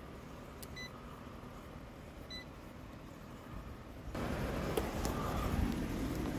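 Two short electronic beeps from a digital clamp meter as its rotary function dial is turned, about a second and a half apart. From about two-thirds of the way through, rustling handling noise as the meter and camera are moved.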